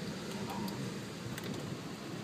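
Steady running noise inside a vehicle driving slowly on packed beach sand, with a low hum from engine and tyres and wind coming in through an open window.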